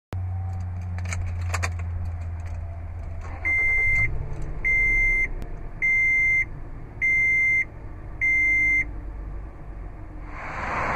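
Toyota FJ Cruiser's dashboard warning chime sounding five evenly spaced high beeps, about one a second. Before the chimes there are a few light key clicks about a second in and a low steady hum that drops away as the first chime starts.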